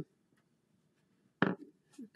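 Quiet room tone, then a single short thump about a second and a half in.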